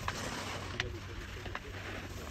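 Slalom gate poles knocked aside by a passing racer: three short clacks about three-quarters of a second apart, over a steady low hiss.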